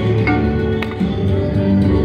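Video slot machine playing its game music while the reels spin: a tune of held notes, with a short click partway through.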